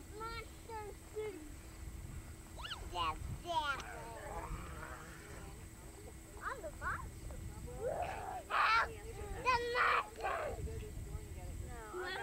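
Young children's voices calling out and squealing at play, in short high-pitched shouts, with the loudest cries about eight to ten seconds in.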